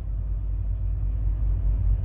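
Steady low rumble of an idling semi truck's diesel engine, heard from inside the parked truck's sleeper cab.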